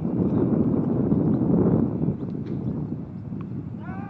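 Wind buffeting the microphone, a rough low rumble that swells over the first two seconds and then eases. A bird gives a short run of repeated chirps right at the end.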